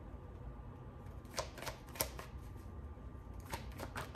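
A tarot deck being shuffled by hand: a few short card clicks and snaps, a cluster from about a second and a half in and another near the end, over a faint steady hum.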